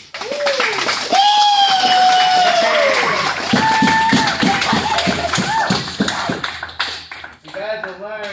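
A group clapping, with high-pitched whoops and yells over it, one long drawn-out shout starting about a second in. The clapping dies down near the end.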